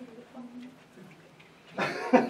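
Faint murmured voices and brief hummed or vocal sounds from a small group of people, then a man starts talking loudly near the end.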